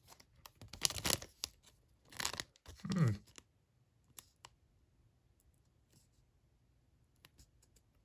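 Foil trading-card pack wrapper crinkling as it is picked up and handled, in two short rustling bursts about one and two seconds in, then only faint small ticks of handling.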